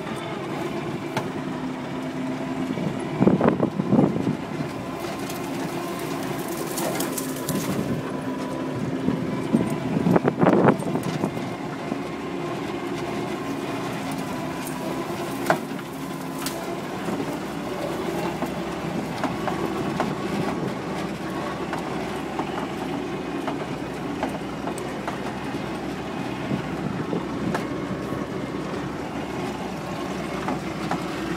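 1942 Dodge WC21 weapons carrier's flathead straight-six engine running steadily under load as the truck drives slowly over rough ground, with the body rattling. The loudest knocks come about three to four seconds in and again about ten seconds in, with a single sharp knock about fifteen seconds in.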